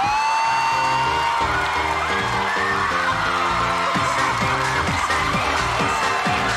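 Dance music with a steady beat starts playing, with an audience whooping and screaming over it.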